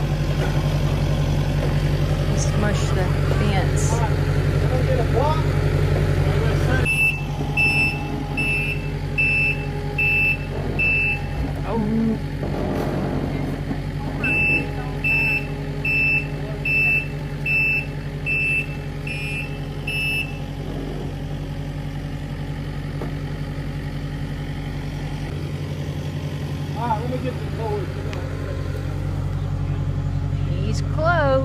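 Compact track loader's engine running steadily, dropping to a lower note about seven seconds in. Its backup alarm then beeps about twice a second in two runs, one of about four seconds and one of about six, while the machine reverses.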